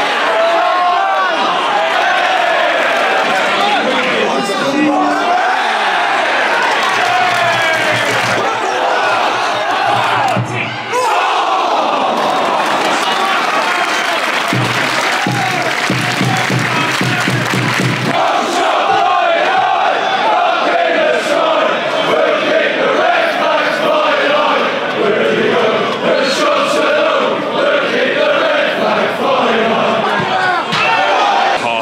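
Football crowd in the stand chanting and singing together, many voices at once, loud and steady.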